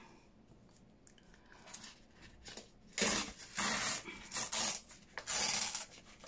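Paper being torn against the scalloped edge of a metal tear ruler: four or five short rips, starting about three seconds in.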